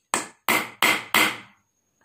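Hammer striking a nail held head-first against a wooden plank, four blows about a third of a second apart. The nail's blunt head end does not go into the wood.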